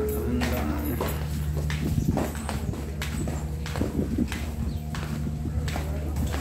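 Footsteps of several people walking on a hard floor, sharp clicking steps roughly every half second, over a steady low hum.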